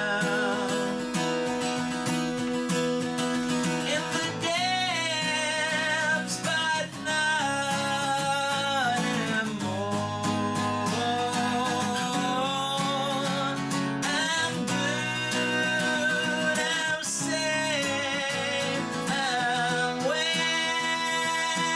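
Acoustic guitar strummed steadily, with a man singing long held, wavering notes over it.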